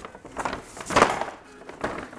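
Brown paper grocery bag rustling and crinkling as a hand rummages inside it and lifts out a jar, in three short crackly bursts, the loudest about a second in.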